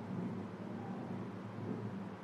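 Steady low rumble and hiss of background noise, even throughout, with no distinct events.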